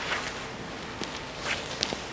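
Footsteps of boots walking on a gritty, debris-strewn floor: a few short scuffing steps and a small click.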